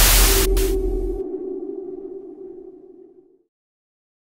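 The fading tail of a rumbling explosion sound effect. The rumble dies away about a second in, leaving a single held low tone that rings on and fades out over the next two seconds.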